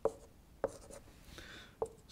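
Marker pen writing on a whiteboard: a few short taps and scratchy strokes of the pen tip.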